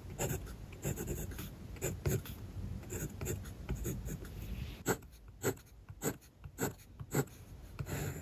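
Kaweco Special mechanical pencil lead scratching on paper, first writing letters in quick, closely packed strokes. About five seconds in it changes to a few separate straight strokes, roughly half a second apart.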